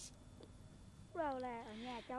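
About a second of near silence. Then a boy's drawn-out, hesitant vocal sound that falls in pitch and wavers for almost a second, just before he starts to speak.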